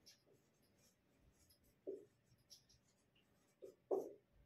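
Marker pen writing on a whiteboard: a run of short, faint scratchy strokes as letters are drawn.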